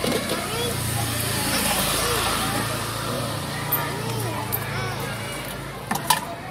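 Children's voices chattering over a motor vehicle's engine running close by, which swells about two seconds in and then eases off.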